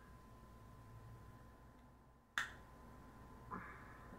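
A single sharp snap of a cigar cutter clipping the tip off a torpedo cigar, about two and a half seconds in.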